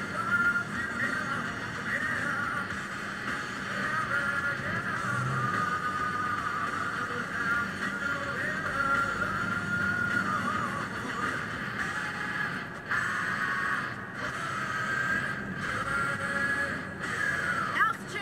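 Music playing on an FM car radio, with its sound crowded into a narrow middle band.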